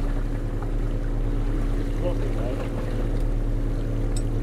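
Boat motor running steadily at trolling speed, a constant low hum, with a brief faint voice about two seconds in.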